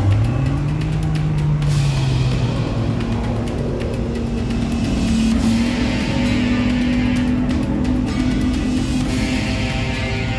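Dramatic soundtrack music over a deep engine sound that revs up in pitch during the first second or so and then fades. A long, steady engine drone follows and climbs slowly in pitch until near the end.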